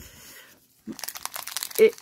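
Foil-plastic wrapper of a Pokémon trading card booster pack crinkling in the hands, a quick run of crackles starting about a second in.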